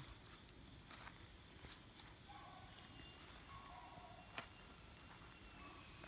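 Near silence, with a few faint clicks and two faint, short pitched calls a little past halfway through.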